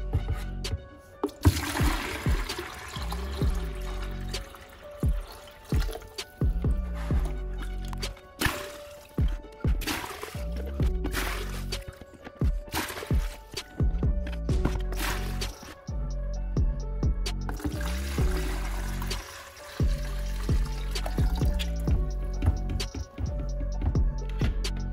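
Milky cerium oxide and water slurry poured back and forth between two plastic pitchers, splashing in several bouts, over background music.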